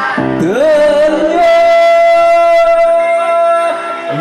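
A man singing live through a microphone over amplified karaoke-style backing music; a note rises in the first half second and is then held steady for about three seconds before it stops near the end.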